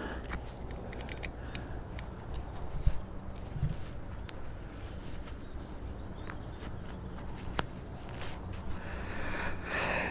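Low outdoor rumble on the microphone with a few scattered light clicks and knocks. Rustling handling noise builds near the end as the camera is fitted to a chest mount.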